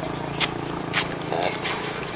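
Footsteps in sandals on a dirt road: a sharp slap about every half second, three in all, over a steady low motor hum.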